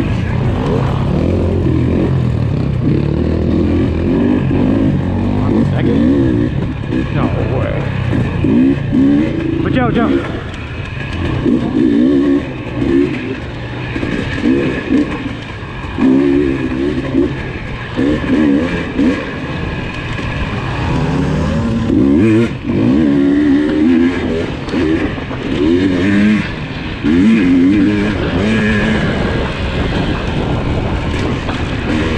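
KTM 300 XC two-stroke single-cylinder dirt bike engine heard from on the bike, revving up and dropping back over and over as the throttle is opened and closed.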